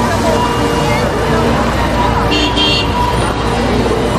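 Street traffic noise with people's voices, and a car horn sounding briefly about two and a half seconds in.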